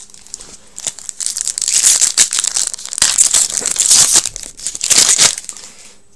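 The wrapper of a 2018-19 Upper Deck Series 2 hockey card pack being torn open and crinkled by hand as the cards are pulled out. It comes as a run of crackly rustles from about a second in until just after five seconds.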